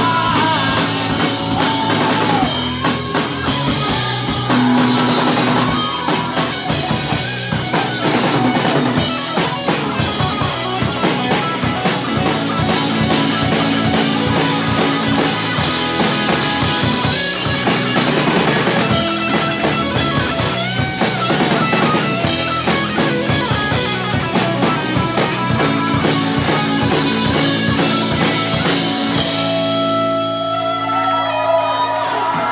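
Live rock band playing an instrumental passage: electric guitars and bass guitar over a drum kit with snare, bass drum and cymbals. The drums and cymbals stop near the end, leaving a guitar ringing.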